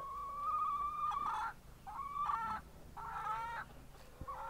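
Backyard hens calling: one long drawn-out call of about a second and a half, then two shorter calls.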